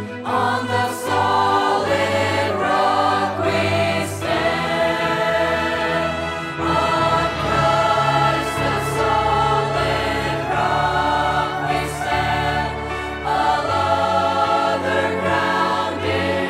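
A mixed choir of voices singing a Christian song into microphones, over a steady low accompaniment.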